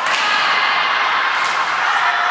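Sharp smack of a volleyball being struck, then a second, lighter hit about a second and a half later, over a steady din of voices echoing in the gym hall.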